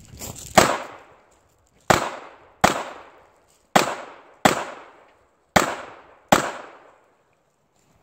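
Handgun shots fired at an IDPA stage: seven sharp shots, the first alone and the rest in three pairs about three quarters of a second apart. Each shot is followed by a short echoing decay.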